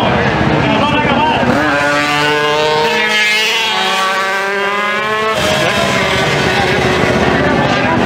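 A motorcycle accelerating hard past at close range. Its engine note climbs, then falls as it goes by and away, and cuts off abruptly about five seconds in. Crowd chatter fills the rest.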